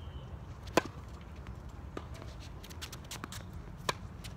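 Tennis ball struck by rackets in a rally. A loud serve hit comes under a second in, then a fainter hit from across the court about two seconds in, then a second loud near hit just before the end, with softer ticks between.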